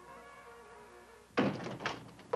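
Quiet sustained notes of a film score fade away. Then a sudden thunk comes about one and a half seconds in.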